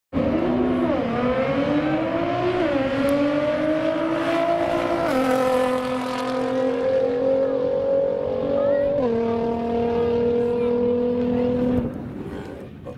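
Nissan GT-R's twin-turbo V6 at full throttle on a quarter-mile drag run. The engine note climbs through each gear and drops at upshifts about 1, 3, 5 and 9 seconds in, then holds a steady pitch and cuts off just before the end.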